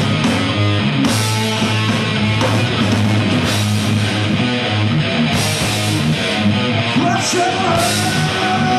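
Live rock band playing loud: distorted electric guitars, bass and a drum kit in a dense, steady wall of sound, with cymbal crashes about a second in and again just past five seconds.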